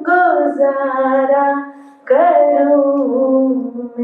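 A woman singing a slow song into a microphone, holding long sustained notes in two phrases, the second beginning about two seconds in.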